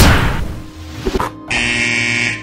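Cartoon sound effects of a soccer ball kicked hard, a loud hit at the start that fades quickly, then a goal buzzer sounding steadily from about a second and a half in, marking a goal scored.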